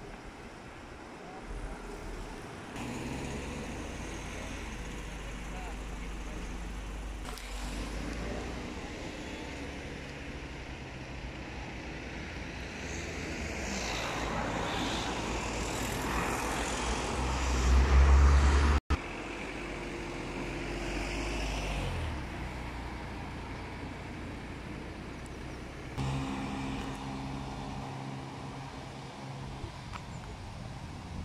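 Road traffic: cars passing on a road, one pass swelling to the loudest point about eighteen seconds in before the sound cuts off abruptly, with a steady engine hum later on.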